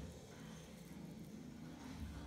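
Quiet room tone with a faint, steady low hum and no distinct sound events.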